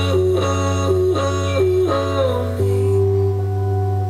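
Music from an FM radio broadcast playing through a loudspeaker. A repeating melodic figure runs over a steady bass note, then settles into a held chord about two and a half seconds in.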